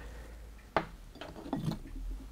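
A single light click about three quarters of a second in, with faint handling sounds, as small engine parts are handled over a wooden bench; a low hum runs underneath.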